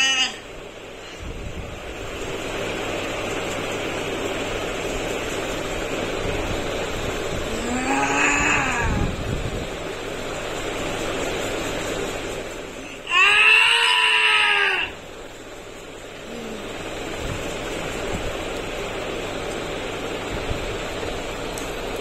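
A boy's wordless cries: a short moaning cry about eight seconds in, then a louder, longer wail around thirteen to fifteen seconds, over a steady background hiss.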